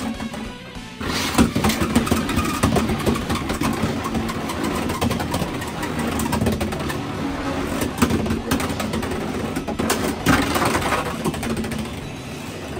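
Beyblade X spinning tops clashing and scraping in a plastic stadium: a dense run of rapid clicks and knocks that starts abruptly about a second in, heard over background music.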